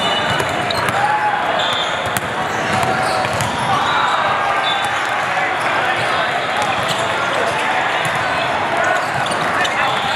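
Busy indoor volleyball hall: many voices talking and calling at once, echoing in the big room, with scattered sharp knocks of volleyballs being struck.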